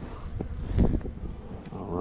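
Gloved hands handling a stainless-steel bee smoker: a few short knocks and rubs, the loudest just before a second in.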